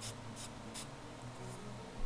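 Aerosol spray paint can giving about four short, quick puffs of spray, over a steady low hum.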